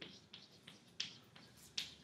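Chalk writing on a blackboard: a run of quick, irregular taps and short scrapes of the chalk stick, about eight strokes in two seconds.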